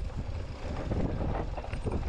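Strong wind buffeting the microphone, a dense low rumble without any clear tone, with scattered knocks and rattles mixed in.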